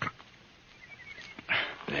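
A dying man's breathy gasping as he is given a drink of water: a short catch at the very start, then a louder gasp about one and a half seconds in.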